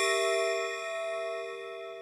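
A struck bell-like metallic chime ringing on with several overtones and slowly fading away.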